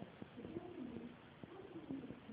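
A person's voice speaking, faint and muffled.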